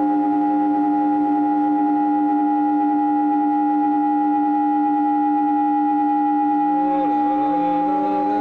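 Ambient drone music: several steady held tones sounding together like a ringing bowl, joined about seven seconds in by higher tones that waver and glide down and up in pitch.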